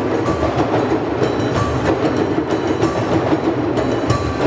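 Many djembes played together by a large drum circle, a dense, continuous rhythm of overlapping hand strikes with no break.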